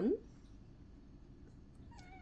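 A cat's meow sliding down and back up in pitch, cutting off just after the start, followed by quiet room tone.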